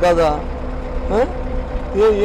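Steady low rumble of a bus engine, heard from inside the bus, with a man's voice over it.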